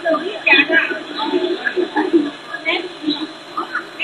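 Indistinct voices of people talking throughout, with no clear words, in audio with the treble cut off.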